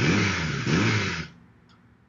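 A short noisy sound effect, just over a second long, with a low wavering rumble that fades out.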